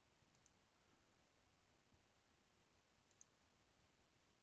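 Near silence: faint room tone with two small, short clicks, about half a second in and about three seconds in.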